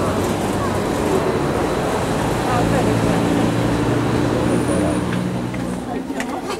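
Steady rumble of road traffic, with a vehicle engine's low hum joining about halfway through, under indistinct voices.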